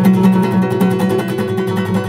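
Classical guitar strummed in a fast, even rock-ballad rhythm, the same chord ringing under every stroke.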